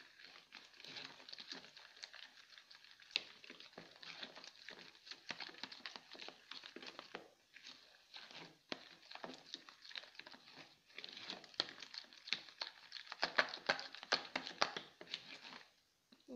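Spoon stirring thick batter in a plastic bowl: a fast, irregular run of soft scrapes and wet clicks against the bowl. The batter is still a little too thick.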